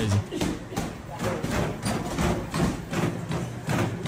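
Rhythmic thudding of footfalls on a running treadmill, about three or four a second, with a man's voice sounding along with it.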